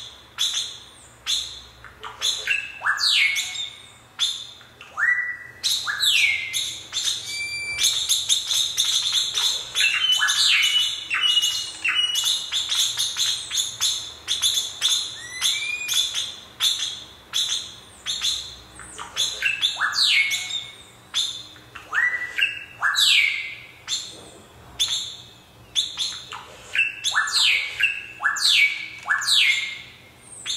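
Rapid bird-like chirps and squawks, each starting with a sharp click and then sliding down or up in pitch, over a faint steady high tone.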